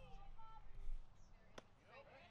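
Faint, distant voices calling out across a youth baseball field, with one sharp click about one and a half seconds in.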